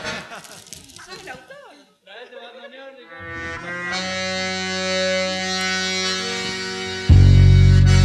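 A piano accordion sounds a long held chord that swells, opening a song's introduction. About seven seconds in, the band joins with a sudden loud, low bass note.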